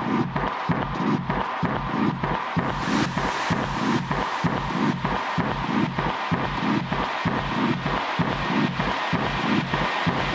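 Dark, distorted techno track: a dense, noisy drone over a low pulse that throbs about twice a second, with hiss briefly opening up about three seconds in.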